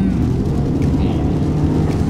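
In-cabin road noise of a petrol Toyota RAV4 driving up a wet mountain road: a steady low rumble of engine and tyres, with an even low engine drone that holds its pitch.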